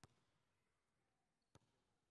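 Near silence, broken only by two faint, very short ticks: one right at the start and one about a second and a half in.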